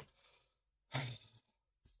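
A man's short, audible sigh about a second in, otherwise near silence.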